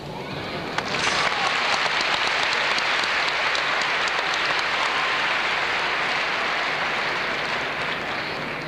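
Arena crowd applauding: the clapping sets in sharply about a second in, holds steady, and fades near the end.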